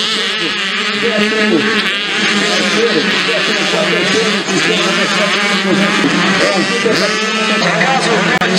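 Several small two-stroke dirt bike engines racing, their pitch repeatedly rising and falling as the riders open and close the throttle around the track.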